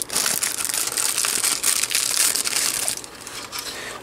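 Clear plastic wrapping being pulled off a 2.5-inch IDE SSD and crumpled in the hands: dense crinkling that eases off about three seconds in.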